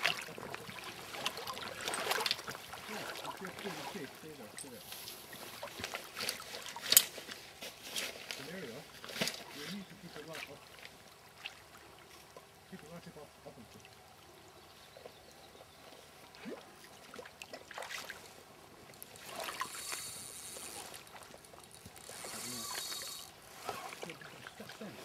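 River water lapping and trickling, with intermittent faint, unclear voices and a few sharp clicks, the loudest about seven seconds in. Two short hissing bursts come near the end.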